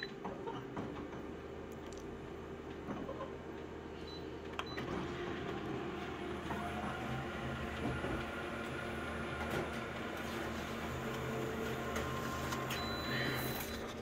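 Colour photocopier running a copy job just after its Start button is pressed: a steady mechanical hum that begins just under a second in and grows a little louder about halfway through as the machine works the page.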